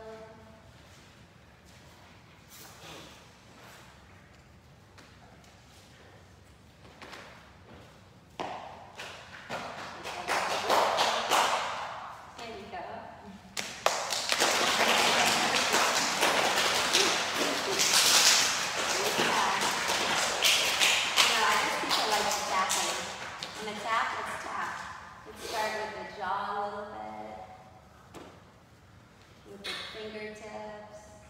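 Loud rustling, crackling and bumping from a body-worn microphone being knocked about and handled. It builds from about eight seconds in, is loudest for about ten seconds and then dies away, with bits of speech before and after it.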